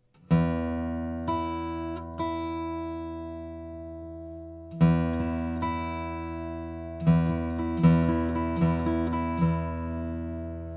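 Acoustic guitar fingerpicked slowly in a harp pattern: a thumbed bass note, then notes on the high E string with the middle and index fingers, each left ringing. The pattern is played through twice, the second time starting about five seconds in.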